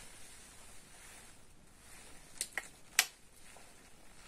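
Quiet handling of a glass perfume bottle: a few light, sharp clicks about two and a half and three seconds in, as the bottle and its cap are handled.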